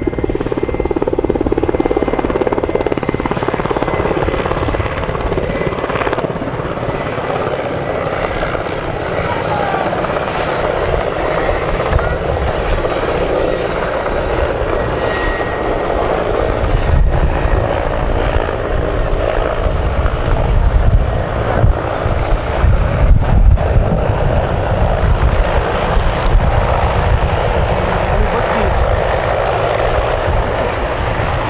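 Mi-171Sh twin-turbine military transport helicopter in flight: continuous rotor beat and turbine noise. Past the middle the low rotor thumping grows heavier and louder as the helicopter comes low, ending in a hover in blown-up dust.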